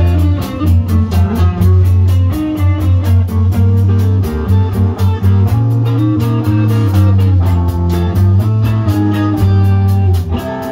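Live band playing an instrumental passage with no singing: electric guitar notes over a bass line, with a steady quick ticking beat on top.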